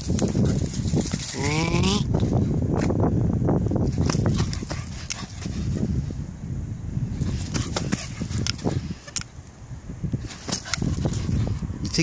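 Footsteps of a person running on a dirt field track, with a steady low rumble on the phone's microphone. A short rising call is heard about one and a half seconds in, and the steps ease off for a moment around nine seconds in.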